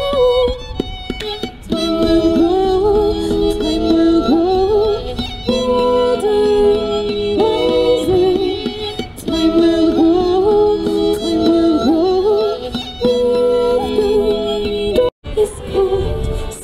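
A woman singing live into a microphone, with fiddle. The music cuts out for an instant near the end.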